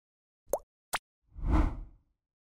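Title-card animation sound effects: two short pops about half a second apart, the first sliding up in pitch, then a whoosh with a deep low end that swells and fades near the end.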